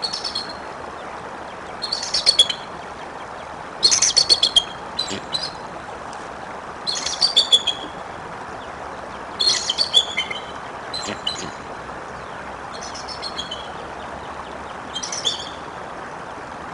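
Bald eagle chittering calls: about eight bursts of rapid high-pitched notes, a second or two apart, over the steady rush of running water.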